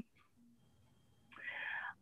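Near silence on a video call, then, about a second and a half in, a short faint breath drawn in just before the speaker talks again.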